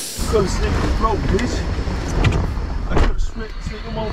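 Police body camera audio from inside a car: a steady low rumble of the running vehicle, starting abruptly, with muffled voices over it.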